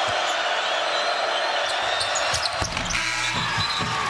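Steady crowd noise in a basketball arena, with a basketball bouncing on the hardwood court and a couple of sharp knocks.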